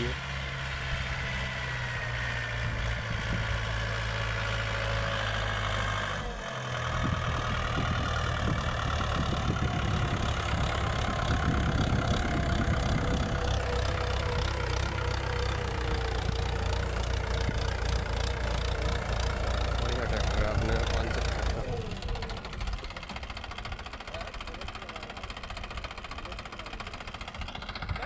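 Mahindra 575 DI tractor's four-cylinder diesel engine running steadily under load while it drags a wooden plank leveller (patela) over tilled soil. The engine sound breaks off briefly about six seconds in, is louder through the middle, and drops back somewhat near the end.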